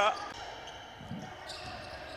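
Basketball game sound in an indoor hall: a steady low background with a single dull bounce of the ball about a second in.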